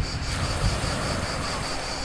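Insects chirping in a fast, even, high-pitched pulse, over a low wash of wind and surf.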